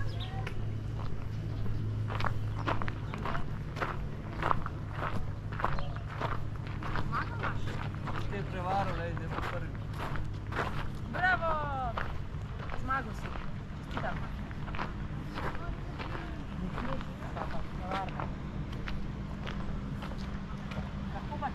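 Footsteps of a person walking on a gravel path over a steady low hum, with people talking in the background.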